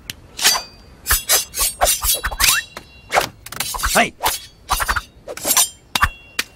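Cartoon sound effects of a knife chopping rapidly on a wooden cutting board as a whole fish is cut into sushi pieces: a quick run of sharp strikes, some with a short metallic ring from the blade.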